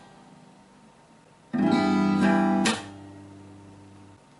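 Acoustic guitar: low notes from a struck string fade out, then about one and a half seconds in a full chord is strummed and rings loud for about a second. A sharp percussive hit cuts the chord off, and the low strings ring on faintly.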